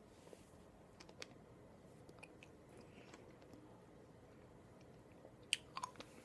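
Faint mouth sounds of a boy chewing very sour candy: scattered soft clicks and smacks, then a louder cluster of clicks near the end.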